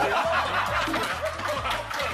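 Men laughing with hand claps over background music with a steady low bass.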